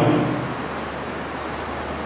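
Steady background noise of a lecture hall: an even hiss with a low hum beneath it.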